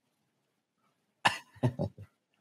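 A man's short laugh, breaking out about a second in with a sudden burst followed by two or three quick pulses.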